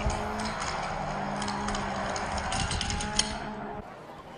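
Die-cast Hot Wheels cars rolling down a plastic track, a steady rolling rattle with a few light clicks later on, fading away near the end.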